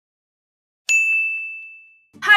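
A single bell-like ding sound effect about a second in, one bright high tone that rings on and fades away.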